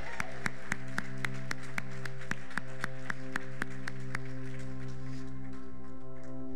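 Congregation clapping, sharp claps at about four a second that die away near the end, over sustained chords of background music.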